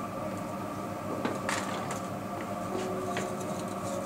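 Hands handling and pulling a section of hair, giving a few soft rustles and clicks, the loudest about a second and a half in, over a steady background hum.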